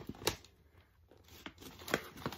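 A few short crinkles and clicks of plastic candy packaging being handled as items are picked out of a pile.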